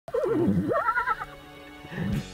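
A horse whinnying once: a loud, wavering call that dips, then climbs high and trails off after about a second. Quieter sustained music follows.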